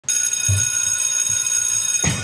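Electric school bell ringing steadily, a bright metallic ring with no decay.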